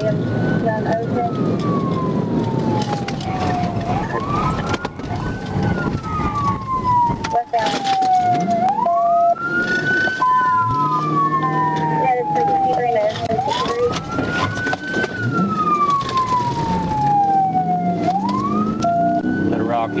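Police car siren in wail mode, each cycle rising quickly and then falling slowly, repeating about every five seconds, heard from inside the pursuing patrol car over its engine and road noise.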